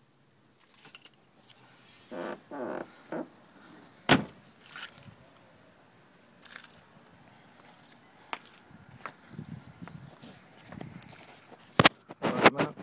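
A car boot lid shut once with a sharp slam about four seconds in, among footsteps and handling noise; a few lighter knocks follow, one louder near the end.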